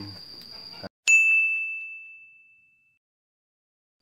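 A single bright, bell-like ding sound effect added in the edit: struck once about a second in, ringing on one clear tone and fading away over about two seconds, with dead silence around it where the garden sound has been cut out. Before the cut, insects chirr steadily in the background.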